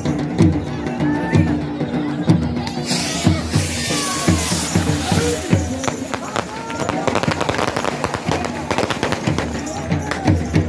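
Dhol drumming with steady accompanying music and crowd voices. About three seconds in, a firework goes up with a rushing hiss lasting a few seconds, followed by a rapid run of crackling bangs from fireworks in the last few seconds.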